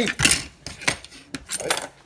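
Kitchen knife against a cucumber and a plastic cutting board, a handful of short, sharp strokes as thin strips of skin are shaved off.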